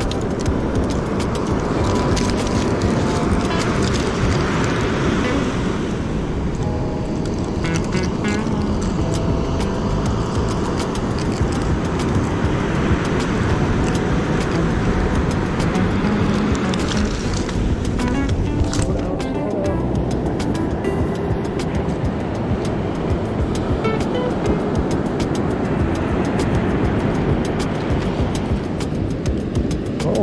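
Background music over a steady rushing noise of beach surf.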